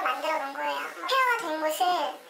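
Speech only: a woman speaking Korean in a fairly high voice.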